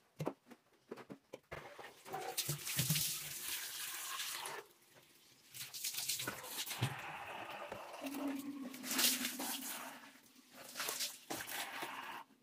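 Bathroom cleaning: water splashing and scrubbing on a ceramic toilet and tiled floor, in two long noisy stretches with scattered knocks.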